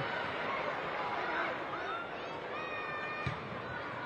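Football match ambience from pitch level: a steady wash of background stadium noise with a distant voice calling out in the middle, and a single dull thud a little after three seconds.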